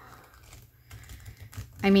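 Oversized matte-finish tarot deck being corner-shuffled, with a run of faint, quick clicks as the card corners flick off the thumbs.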